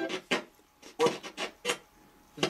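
Spirit box sweeping through radio stations: short choppy fragments of broadcast sound, about five in two seconds, broken by quiet gaps.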